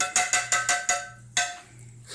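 White plastic slotted spoon knocking against a small nonstick saucepan of sugar syrup: about half a dozen quick knocks, each with a brief metallic ring, then one last knock about a second and a half in.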